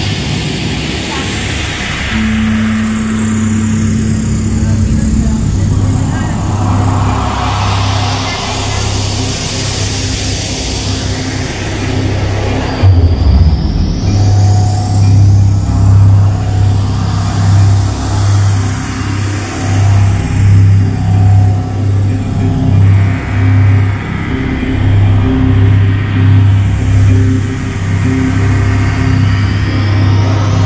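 Live analogue-synthesizer space music: slow, sweeping swooshes over a low drone. About halfway through, a deep bass note begins pulsing about once a second.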